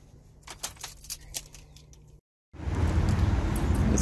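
A handful of light clicks and jangles, then, after a short dropout, steady outdoor background noise with a low rumble.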